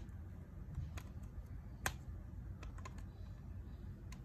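Faint, scattered clicks and taps from a plastic circuit breaker being turned over in the hand, the sharpest a little under two seconds in.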